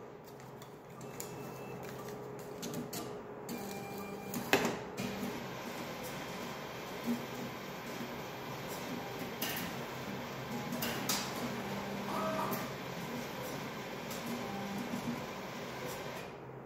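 An ATM's cash-deposit mechanism running as it takes in and counts a banknote: a steady mechanical whir, with clicks and clunks every few seconds.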